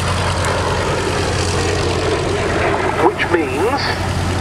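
A PBY Catalina's two Pratt & Whitney R-1830 Twin Wasp radial engines running during start-up, a steady low drone of engines and propellers.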